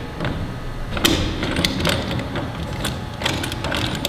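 T-handles on the steel clamp collar of a dust-drum lid kit being loosened by hand: a run of irregular small clicks and rattles over a steady low hum.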